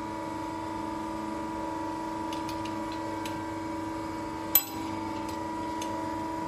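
Steady electrical hum from a stainless steel tube coiling machine standing powered on, with a few faint ticks and one sharp metallic clink about four and a half seconds in as the steel tube is handled in the machine.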